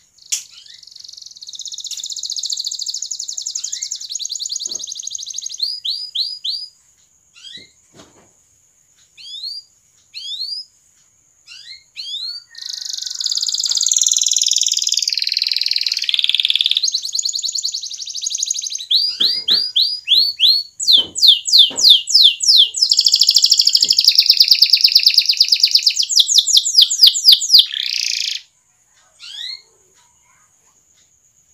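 Domestic canary singing: long buzzy trilling rolls broken by quick runs of rising chirps, with a sparse stretch of single chirps in the first half and the longest, loudest rolls in the second half, ending shortly before the end. A steady high-pitched tone runs underneath.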